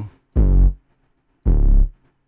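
Two short notes of a heavily distorted 808 bass, about a second apart, each deep and buzzing with overtones. The 808 comes from the Heat Up 3 VST, with Soundtoys Decapitator saturation giving it its distorted edge.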